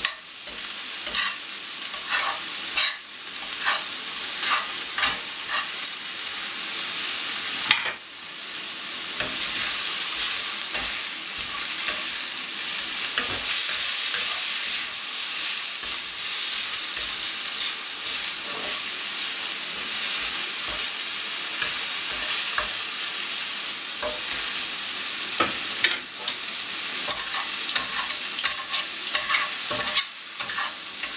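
Beef strips sizzling in oil in a frying pan over high heat, frying rather than stewing, with a knife, fork and spatula clicking and scraping against the pan as the meat is cut up and turned. The sizzle dips briefly about eight seconds in, then comes back louder and steady.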